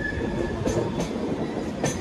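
Passenger train running on track: a steady rumble from the coaches, a high wheel squeal on the curve that fades out about half a second in, and a few sharp clicks of the wheels over the rails.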